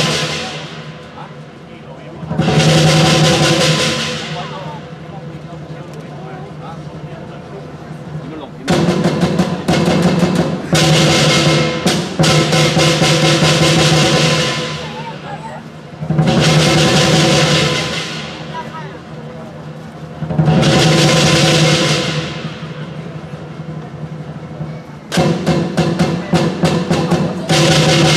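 Southern Chinese lion dance percussion: a large lion drum beating with cymbals and gong, swelling five times into loud cymbal-heavy passages with quieter drumming in between.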